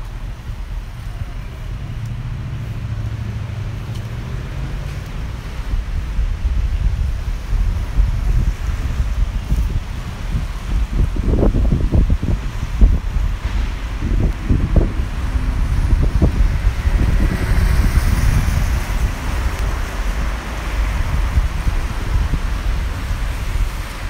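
Wind rumbling and buffeting on the microphone over road traffic on a wet street, with gusts strongest past the middle. A passing car's tyres hiss on the wet road about three-quarters of the way through.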